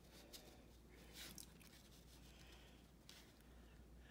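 Near silence, with a few faint rustles of paper strips being slid into place on cardstock.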